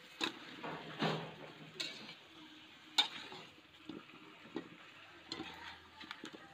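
Slotted metal spatula scraping and knocking against an aluminium wok as chicken pieces and vegetable slices are stirred, with a faint sizzle of frying underneath. About five sharp scrapes come at uneven intervals, the loudest about three seconds in.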